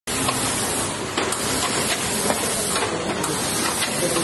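Steady hissing and clattering of industrial machinery running, with irregular sharp clicks every half second or so.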